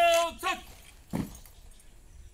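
A ceremonial horn call during a salute. A long held note ends just after the start, falling away in pitch, followed by two short falling notes. A single dull thump comes about a second later.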